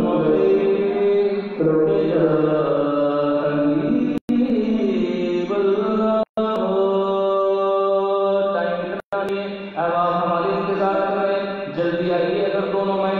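A man's voice singing a naat, an Urdu devotional poem, into a handheld microphone, holding long notes that slide from pitch to pitch. The sound cuts out for a split second three times.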